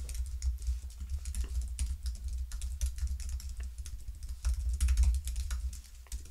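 Typing on a computer keyboard: a quick, irregular run of keystrokes as a sentence is typed out.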